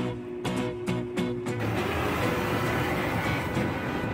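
Music with a beat, then about a second and a half in a steady hiss of water and foam spraying onto a car from the nozzles of a PDQ LaserWash 360 touchless car wash.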